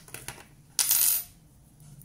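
A few light handling clicks, then a small metal object dropped onto the wooden desk, clattering briefly with a thin metallic ring about a second in.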